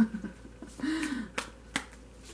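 Tarot cards being shuffled by hand, with a few sharp snaps of the cards against each other: one at the start and two close together about a second and a half in.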